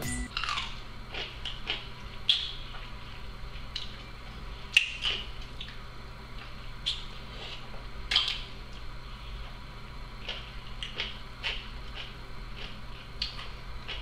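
A person biting and chewing a pickle: scattered wet crunches and mouth clicks over a steady low hum.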